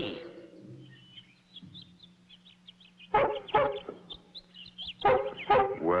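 Cartoon sound effect of birds calling: faint high chirps, then a run of short pitched calls about three seconds in, over a low steady hum. A voice begins near the end.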